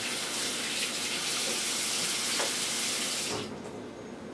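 Steady rush of running water, as from a tap, that stops abruptly about three seconds in.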